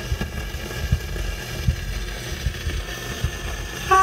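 Stylus running in the lead-in groove of a spinning 78 rpm shellac record: steady surface hiss with irregular crackles and low pops. The recorded music comes in right at the end.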